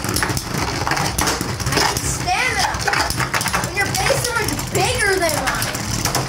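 Two Beyblade spinning tops whirring and clashing in a plastic stadium bowl, a continuous rattle with rapid clicks of collisions. Excited voices cry out over it a few times, about two, four and five seconds in.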